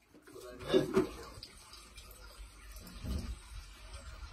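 Water from a garden hose running over a fish pump and into a plastic bucket, with a short laugh about a second in.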